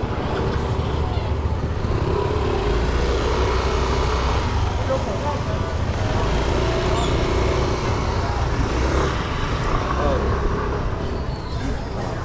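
Motor scooter engines running at low speed close by as they edge through a crowd, a steady low rumble strongest through the middle of the stretch, with people's voices around them.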